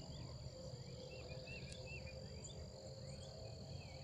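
Faint outdoor ambience: a steady high-pitched insect-like trill, with scattered short chirps and a low rumble underneath.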